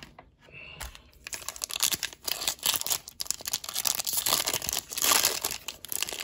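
Foil wrapper of a Stadium Club Chrome trading-card pack being torn open and crinkled by hand: a dense crackle that starts about a second in and keeps on.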